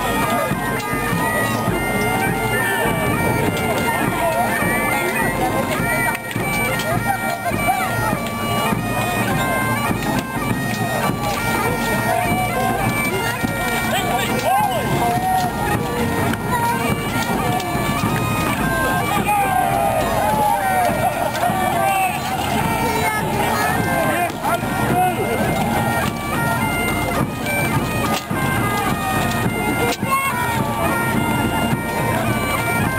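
Bagpipes playing a tune in held, stepping notes, over the voices of many men shouting and calling.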